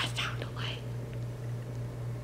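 A person whispering close to the microphone for about the first second, then only a steady low hum.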